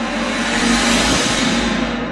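Logo ident sound effect: a loud whooshing swell that builds, peaks about a second in and fades, over sustained music tones.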